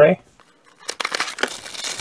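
Packaging rustling and crinkling as a plastic console tray is pulled out of its cardboard box, starting about a second in and continuing as a dense crackle.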